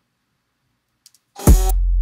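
Silence, then about a second and a half in a single 808 bass hit played back dry with no plugins: a sharp click at the attack, then a deep, steady sub-bass tone that keeps ringing.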